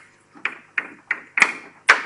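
Chalk striking and scraping on a blackboard while writing: a run of sharp, uneven taps, about three a second, with the two hardest strokes in the second half.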